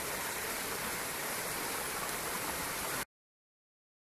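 A small stream cascade: shallow water running steadily over stone steps. It cuts off abruptly about three seconds in.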